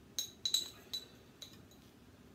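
Metal teaspoon clinking against a glass jar of instant coffee while scooping out granules: about five light, ringing clinks, several close together in the first second and a half.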